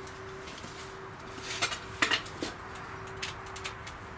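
A steel skimming tool clinking and scraping against a clay crucible while dross is skimmed off molten aluminium. There are a handful of sharp metallic clinks, the loudest around the middle, over a faint steady hum.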